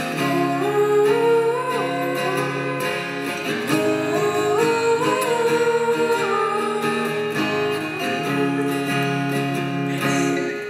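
Two female voices singing in harmony, backed by an acoustic guitar.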